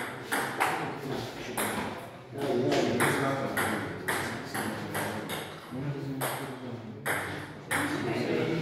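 Table tennis rally: a plastic ball struck back and forth by rubber paddles and bouncing on the table, sharp clicks at about two to three a second.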